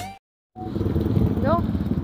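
Background music cut off near the start, then after a short gap a steady low rumble of wind buffeting the microphone outdoors, with a brief vocal sound about a second and a half in.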